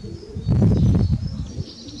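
A dove cooing in the background, low and pulsing.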